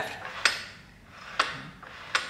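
Two sharp metal clicks about a second apart from a bead roller's adjustable lower shaft and its fittings as the shaft is moved by hand.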